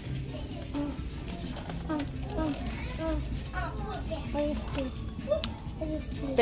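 Children's voices chattering indistinctly in the background over a steady low rumble, with faint music.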